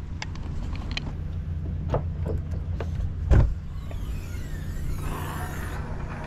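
A boat's engine-compartment hatch being handled and lifted open, with a thud about three seconds in and faint high squeaks near the end, over a steady low rumble.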